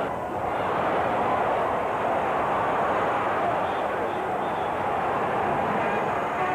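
Large arena crowd cheering, a steady wash of many voices that swells slightly just after the start.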